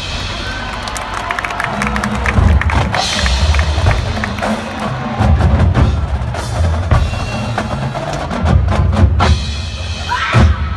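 Marching band percussion playing a drum-led passage, with deep bass drum hits under quick, sharp snare strikes.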